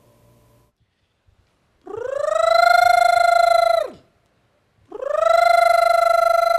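A man's singing voice doing a vocal warm-up exercise: two long held notes of about two seconds each, on the same pitch, each sliding up into the note and dropping off at the end, with a fast flutter running through them.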